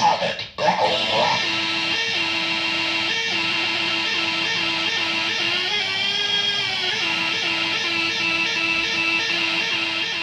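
Circuit-bent Speak & Math toy sounding a buzzy electronic tone, chopped by its added LFO into short repeated notes about three a second. About halfway through, the pitch swells up and back down while the tone switches and knobs are worked.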